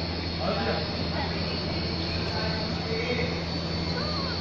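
Steady low hum under a noisy outdoor background, with faint scattered voices.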